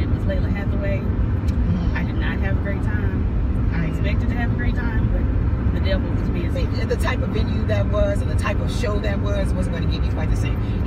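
Steady road and engine noise of a moving car heard inside the cabin, a constant low rumble under women talking.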